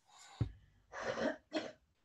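A person coughing twice, two short coughs about half a second apart, just after a faint breath and a soft thump.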